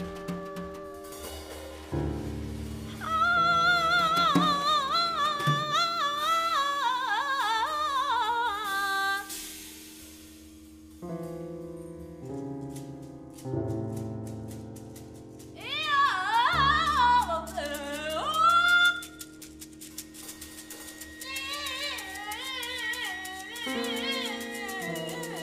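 Free improvised music for voice, violin, drum kit and grand piano: high wordless vocal and string lines waver and glide over sustained low tones. There are two louder stretches, one soon after the start and one about two-thirds of the way in, with a quieter passage of light clicking percussion between them.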